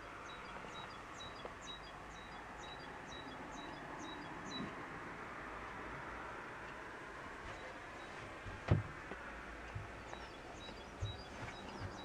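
Quiet cabin room tone with faint, quick high chirps from a small bird, in two runs: through the first few seconds and again near the end. A single sharp knock about nine seconds in.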